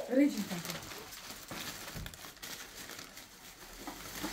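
Thin plastic shopping bags rustling and crinkling as hands rummage in them and pull out groceries, faint and irregular.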